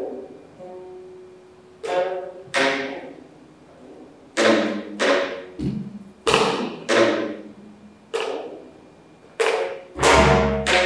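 Geomungo, the six-string Korean zither, plucked with a bamboo stick in slow, unhurried single notes, about ten over the stretch. Each stroke is a sharp attack with a low knock of the stick against the instrument's body, ringing out and fading before the next.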